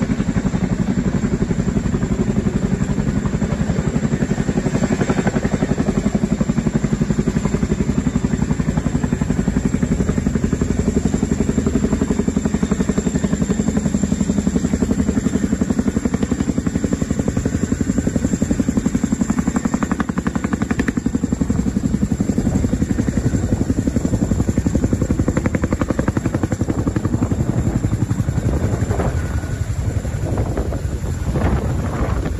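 CH-47 Chinook tandem-rotor helicopter hovering low, its rotors beating in a fast, steady, loud pulse.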